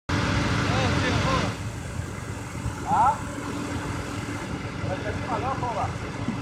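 A 4x4's engine running at a steady low rumble, louder for about the first second and a half. Short shouted voice calls come over it a few times.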